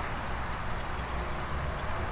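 Steady low background hum under an even faint hiss, with no distinct knocks or handling sounds standing out.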